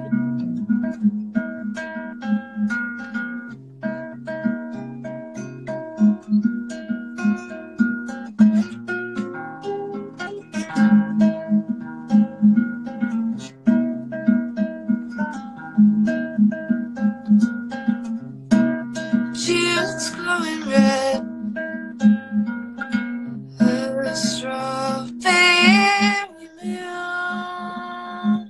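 Acoustic guitar played solo, picking a steady repeating pattern of notes. A singing voice comes in over it in short phrases in the last third.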